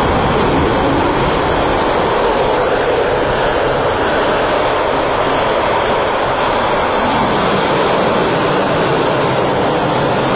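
Rocket engine firing on a static test stand during a hot-fire test: a loud, steady rushing noise with no break.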